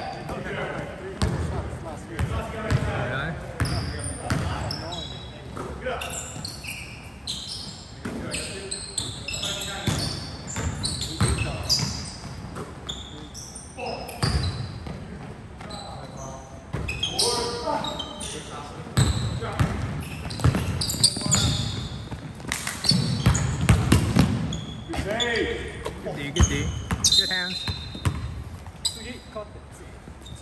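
Basketball game in a gym: a ball bouncing on the hardwood floor, sneakers squeaking in short bursts, and players calling out, all echoing in the large hall.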